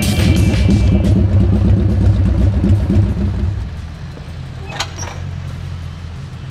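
Motorcycle engine running close by with a fast low exhaust pulse. About three and a half seconds in it drops away, leaving a quieter steady low rumble and a couple of short clicks near the end.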